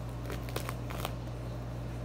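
A few light clicks and rustles of a hand handling a phone near its microphone, over a steady low hum.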